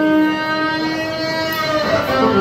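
Electric violin bowing long, held notes that sound together as a chord, moving to new notes near the end.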